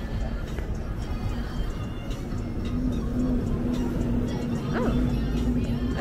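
Busy city street ambience: music playing over a steady low rumble of traffic, with a sustained tone entering about halfway through and a brief rising voice-like call near the end.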